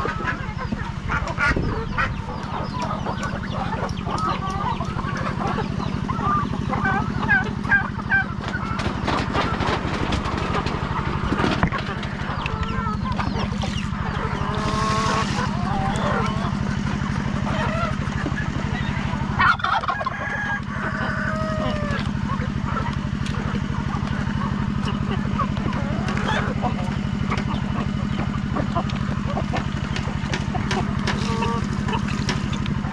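A flock of free-range chickens clucking and calling, with many short calls scattered through the whole stretch. Underneath runs a steady low mechanical hum.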